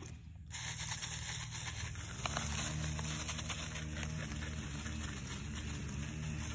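Five-gallon pump garden sprayer's wand spraying onto squash plants and dry straw mulch: a steady hiss with fine crackly patter. A low steady hum joins about two seconds in.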